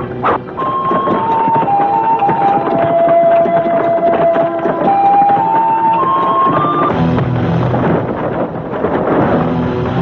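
A Chinese bamboo flute plays a slow solo melody that steps down note by note to a long held note and then climbs back up, over a busy, dense backing. About seven seconds in the flute stops and low, rhythmic music with a drum-like pulse takes over.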